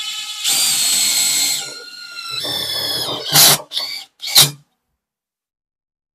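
DeWalt DCF850 brushless impact driver driving a large washer-head screw into a metal bar. It runs with a high, steady whine for about three seconds, then gives three short bursts as the screw seats, and stops well before the end.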